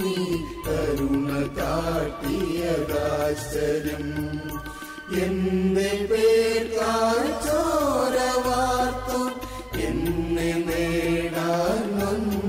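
A mixed choir of men and women singing a Malayalam Christian hymn of praise together, with held, gliding sung notes.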